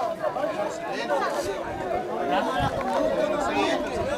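Several people talking at once: a babble of overlapping voices in which no single speaker stands out.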